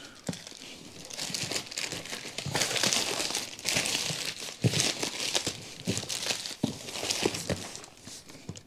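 Plastic wrapping being cut and torn off a cardboard box, crinkling and rustling in irregular bursts with small clicks and knocks of the box being handled.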